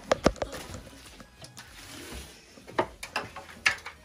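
A few sharp knocks and clicks from handling and moving about: a quick cluster at the very start, then several more near the end.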